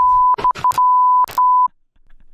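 Censor bleep: a steady high beep tone, broken five or six times by short loud bursts of noise, cutting off shortly before the end.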